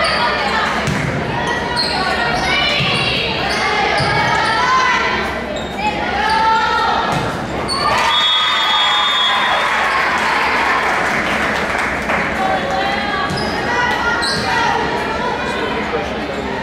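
Volleyball game sounds echoing in a gymnasium: sharp hits of the ball among players' and spectators' voices calling out.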